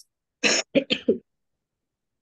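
A person clearing their throat, a short rough burst followed by a few quick catches, over a video-call connection that cuts to dead silence around it.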